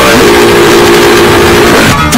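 Deliberately overdriven, clipped audio: a wall of harsh distorted noise at full loudness, with one steady held tone through most of it.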